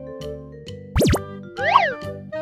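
Light children's background music, with cartoon quiz sound effects marking the answer reveal: a fast swoop up and back down in pitch about a second in, then a short tone that rises and falls near the end as the correct answer is shown.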